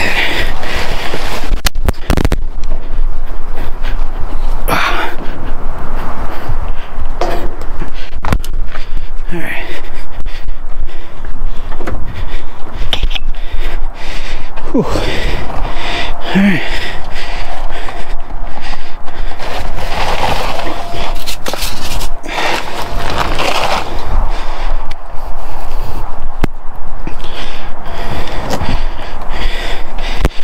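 Close, irregular scraping, knocking and rustling as a cardboard box of groceries and cans is handled inside a metal dumpster and then carried off, with footsteps on pavement.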